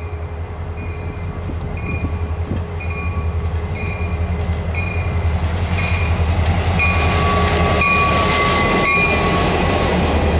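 CSX SD40 diesel locomotive approaching and passing close by. Its engine drone pulses deeply and grows louder, while a bell rings about every three-quarters of a second, and there is a rush of noise as it goes past near the end.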